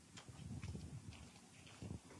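Faint, irregular light clicks and soft low thuds: movement and handling noise in the room.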